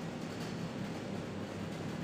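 Steady background noise, a soft even hiss with a faint low hum, in a pause between spoken phrases; no distinct sound stands out.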